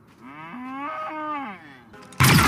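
A blurrg's single long call, a creature sound effect that rises in pitch, holds, and falls away.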